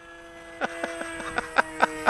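Electric motor and propeller of an RC flying wing giving a steady whine at cruising throttle as it passes overhead, with a run of short sharp clicks about four a second.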